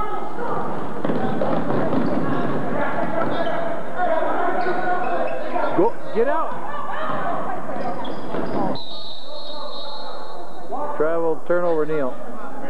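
Basketball game sound in a gymnasium: a ball bouncing on the hardwood floor amid the voices of players and spectators. About nine seconds in, the noise drops away suddenly and a steady high tone holds for about two seconds, followed by a few shouts.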